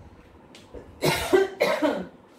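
A woman coughing twice in quick succession, about a second in.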